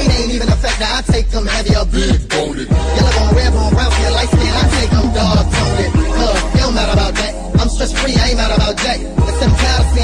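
Miami bass (jook) hip hop track playing: rapped vocals over a heavy, sustained deep bass and quick, repeating drum hits.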